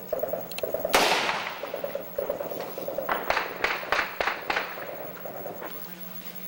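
Gunfire in a firefight: one loud shot about a second in that echoes away, then a rapid run of about six shots between three and four and a half seconds in.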